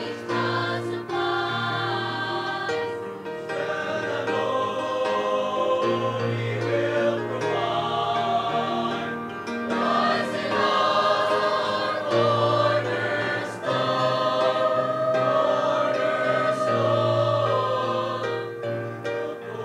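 Mixed choir of men's and women's voices singing a hymn in parts, with long held notes, growing louder about halfway through.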